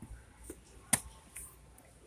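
A single sharp click about a second in, with a couple of faint ticks, over low, steady room noise.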